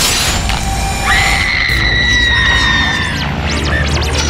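Horror-trailer sound design: a sudden crashing hit, then about a second later a long, high, held shriek that sinks slightly in pitch before stopping. A low droning music bed runs under it.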